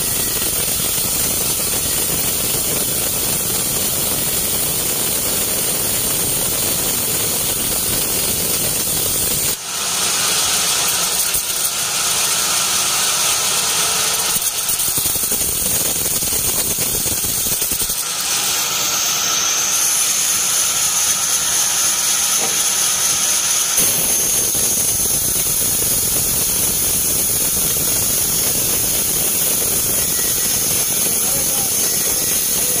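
Band sawmill's blade cutting lengthwise through a teak log: a loud, steady hissing saw noise over the mill's running machinery. Its tone changes abruptly a few times.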